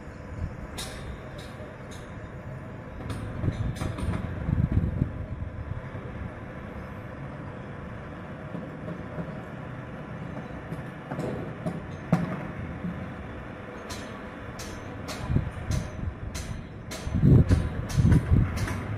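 Construction-site noise: a steady machinery hum with scattered sharp knocks, coming more often near the end, and a few low rumbles.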